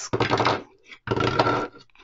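A small plastic clip-brick model being handled and set down on a wooden tabletop: two short stretches of plastic clattering and knocking, the second about a second in.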